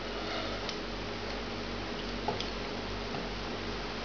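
Quiet kitchen room tone: a steady low hum with a few faint light ticks from hands handling things on the counter.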